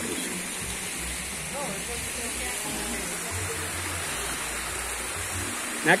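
Steady rushing of a small waterfall pouring over rocks into a stream, with faint voices in the background.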